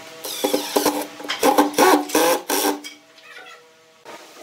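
Cordless impact driver driving a screw into wood in a few short bursts of whirring and hammering, stopping about three seconds in.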